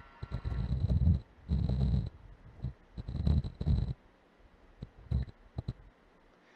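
Low rumbling bursts with a few small clicks: handling noise on the microphone as the kaleidoscope is turned against the camera.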